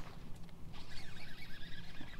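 A sharp swish-knock right at the start as the fishing rod is swept up to set the hook, then, from under a second in, a steady rasping whir of a fishing reel being cranked fast to bring a hooked bass in.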